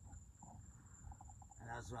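Faint, steady high-pitched trill of night insects such as crickets, one unbroken tone.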